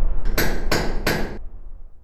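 Closing audio sting of a brand logo: three quick sharp knocks, about a third of a second apart, over a low sustained tone from the preceding music that fades out near the end.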